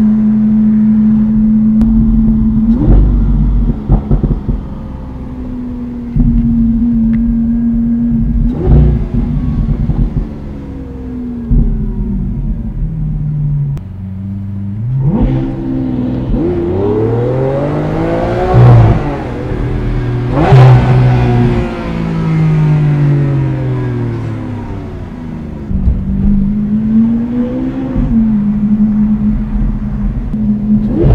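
Lamborghini Aventador Roadster's V12 engine heard from the cabin while driving. It runs at a steady low pitch for the first half, then rises and falls in revs several times as the car accelerates and shifts gear. A few sharp cracks cut in along the way.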